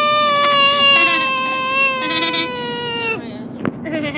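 A young child's single long, high-pitched wail, held for about three seconds and sinking slowly in pitch before it cuts off sharply, followed by a couple of short knocks.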